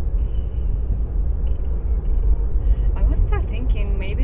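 Steady low road rumble inside a moving car's cabin. About three seconds in, a voice comes in over it.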